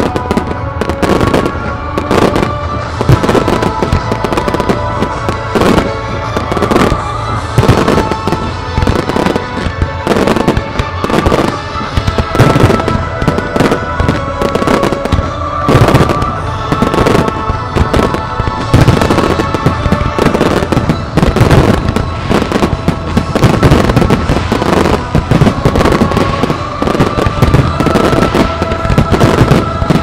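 Display fireworks: a dense, continuous barrage of aerial shells and low fan-shaped effects, with many sharp bangs and crackles following one another irregularly, several to a second. Music plays underneath.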